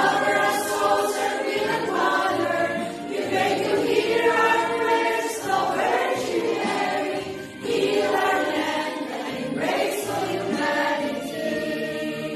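A choir of women, religious sisters, singing an English hymn to the Virgin Mary in long held phrases, with a short break about two-thirds of the way through.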